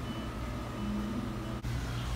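Steady low background hum with a brief faint voice-like tone partway through, broken by a sudden cut near the end.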